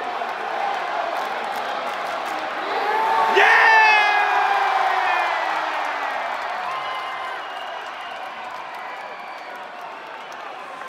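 Arena crowd cheering, swelling about three seconds in with loud whoops and yells, then slowly dying down.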